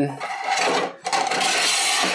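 Metal mounting rail being slid by hand along the channel of an e-bike battery case: a scraping rub in two pushes, with a short break about a second in.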